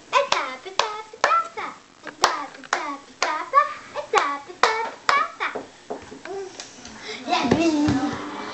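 A child clapping her hands in a steady rhythm, about two claps a second, with a child's voice chanting short sounds between the claps; the clapping stops about six seconds in and a louder voice follows near the end.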